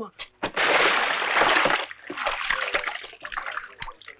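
A man plunging his head into a bucket of water: a loud splash and slosh lasting about a second and a half, followed by quieter splashing and dripping as he comes up.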